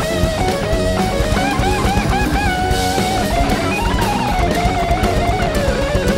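Live rock band playing an instrumental passage: an electric guitar leads a wavering, bending melodic line over drums, rising about four seconds in and then falling back.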